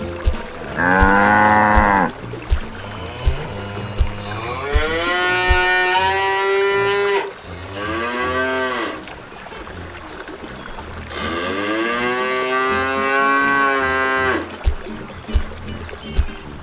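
Cows mooing: four drawn-out moos, the second and fourth long and held, the others shorter, with a regular low thumping underneath.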